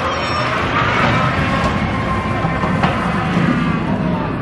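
Water coaster train running down the drop from its vertical lift hill, with a steady low rumble of wheels on the steel track. Several riders are screaming at once over it.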